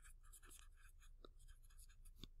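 Faint scratching of a pen writing on lined notebook paper, a quick run of short strokes.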